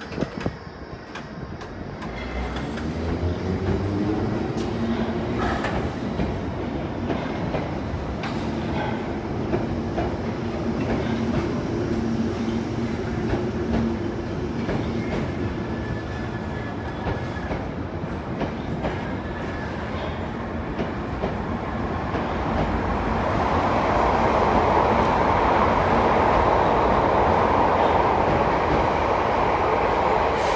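A Bakerloo line 1972 Stock tube train pulling away from the platform. A motor whine rises as it starts off and then holds steady, with wheels clicking over the rail joints. A louder rushing rail noise builds over the last several seconds as the train leaves.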